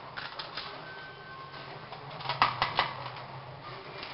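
Plastic spoon scraping and clicking against a small plastic tray and a steel bowl as spices are knocked into batter, with a quick run of sharp taps a little past halfway. A faint steady hum underneath.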